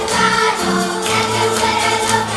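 Hungarian folk music with singing voices over instruments, a steady held tone sounding beneath the melody.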